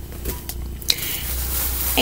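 Rustling of clothing being handled as one shirt is set aside and the next picked up, with a couple of light clicks about halfway through.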